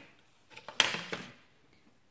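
Plastic cookie cutters and a wooden pastry stamp handled on a tabletop: a few light clicks and one sharper knock a little under a second in, with a brief rustle after it.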